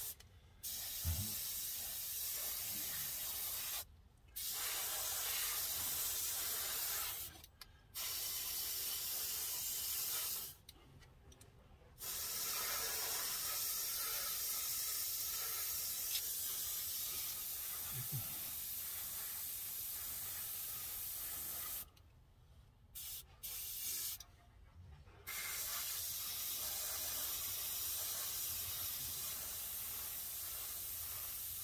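Dual-action gravity-feed airbrush spraying enamel paint: a steady hiss of air and atomised paint that stops and restarts several times as the trigger is let off between passes.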